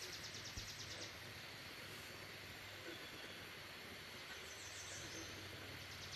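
Faint outdoor background noise. A faint, fast, high trill sounds during the first second and again briefly about four and a half seconds in.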